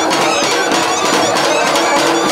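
Live brass band music, with a clarinet playing alongside trumpet and drum, loud and continuous.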